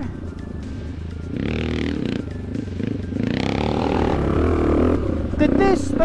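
Yamaha HL500's four-stroke single-cylinder motocross engine pulling as the bike is ridden on a dirt track, swelling twice as the throttle opens, with music underneath.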